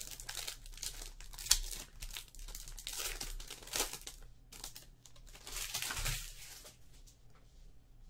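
A foil trading-card pack being torn open and its wrapper crinkled, in several spells of crinkling over the first six seconds with one sharp crack about a second and a half in; it grows quieter near the end.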